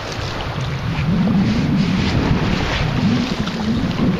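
A small wave washing up over wet sand at the water's edge, with heavy wind noise on the microphone; the sound swells about a second in.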